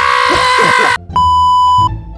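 A man's long, loud scream held on one pitch, cut off abruptly about a second in, followed by a steady electronic beep lasting under a second.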